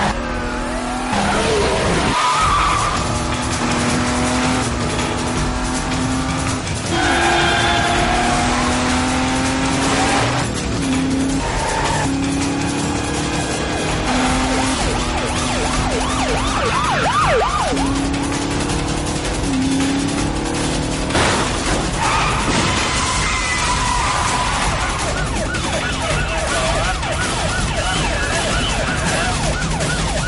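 Car-chase sound effects: car engines and tyres squealing and skidding, over dramatic background music, loud and busy throughout.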